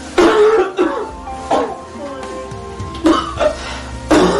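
A man coughing in three bouts, the first about a quarter second in and the others about a second and a half apart, over steady background music.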